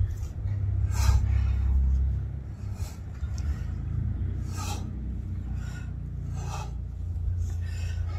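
Low, uneven rumble of wind buffeting the microphone outdoors, with short hissing sounds about every one to two seconds.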